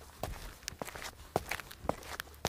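Footstep sound effects: a run of short, soft taps at an uneven pace of about three a second.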